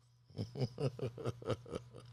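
A man chuckling quietly, a run of about seven short pulses at roughly four to five a second.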